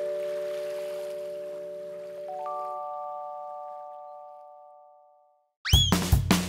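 A chime jingle: a chord of bell-like notes ringing and slowly fading, joined about two seconds in by a few higher notes, dying away to silence. Near the end a quick rising whoosh leads into upbeat children's music with a steady drumbeat.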